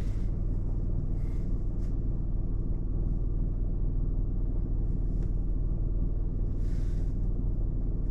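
Car engine idling while stopped, heard from inside the cabin as a steady low rumble, with a few faint brief noises over it.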